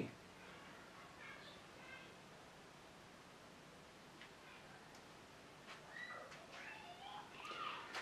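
Near silence: room tone, with a few faint high chirps and a couple of soft clicks.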